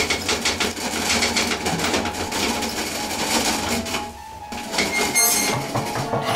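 A loud, rapid clattering rattle made of many quick clicks, easing briefly about two thirds of the way through.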